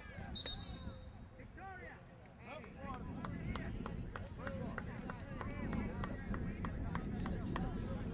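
Indistinct distant shouts and calls of players and sideline spectators on an open soccer field, with scattered faint sharp taps. Wind rumbles on the microphone from about three seconds in.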